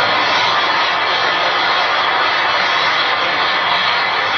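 An audience applauding steadily, a dense even wash of clapping with no break.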